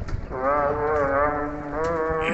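A singing voice holding one long, wavering note of an Arabic devotional chant (dhikr), over a steady low drone.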